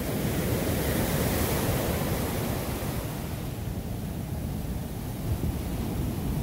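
Ocean surf washing in over a sandy beach: a steady hiss of foam and water, fullest in the first couple of seconds and thinning after about halfway, with wind rumbling on the microphone underneath.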